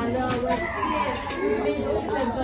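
Overlapping voices of children playing and people chatting in a room.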